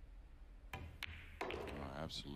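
Pool cue tip striking the cue ball, then a sharp click about a quarter second later as the cue ball hits the 8-ball and pots it; a short burst of noise follows about half a second after that.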